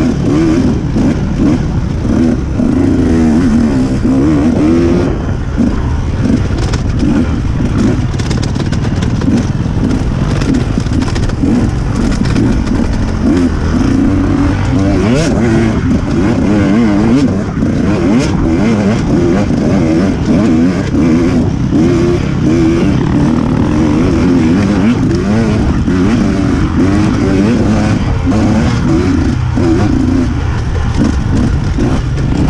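Onboard sound of an off-road dirt bike engine racing along a woods trail, its revs constantly rising and falling as the throttle is worked, with scattered knocks and rattles from the bike over the rough ground.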